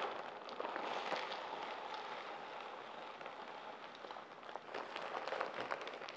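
Orchid bark chips pouring from a plastic bag into a plastic basin: a steady light pattering hiss with scattered small ticks, thinning out in the second half.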